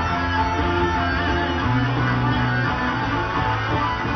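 Electric guitar playing sustained lead notes over low bass notes, which shift about a second and a half in: a lead guitar track being recorded for a black metal album.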